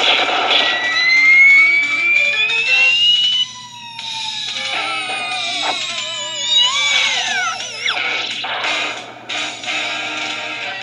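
Cartoon sound effects from a television: a noisy scuffle at the start, then a whistle rising for about two seconds, followed by wavering, falling whistle tones and a quick downward swoop near the end, over a steady low hum.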